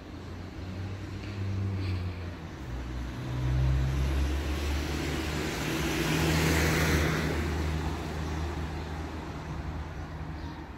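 A road vehicle's engine running close by, its low hum stepping up and down in pitch, with tyre and engine noise swelling to its loudest about six to seven seconds in as it passes.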